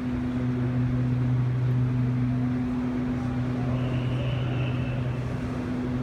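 A steady low machine hum over a broad rushing noise, with a faint high whine for about a second and a half in the middle.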